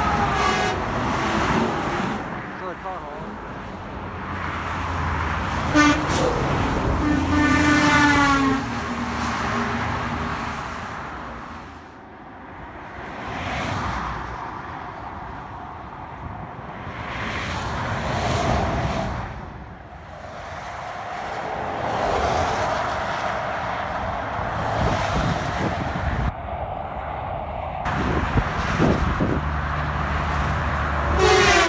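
Semi trucks passing on a highway, their tyre and engine noise swelling and fading as each one goes by. About six seconds in, a truck's air horn gives a short toot and then a longer blast of about a second and a half, its pitch sagging as it ends.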